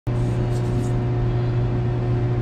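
Steady low machinery hum with a constant higher tone, the drone of equipment running in the shop, with faint light ticks of small metal parts being handled in the first second.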